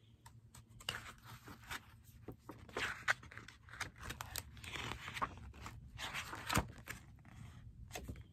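Rustling and crinkling of paper and packaging being handled, in irregular bursts, with one sharper crackle about two-thirds of the way through.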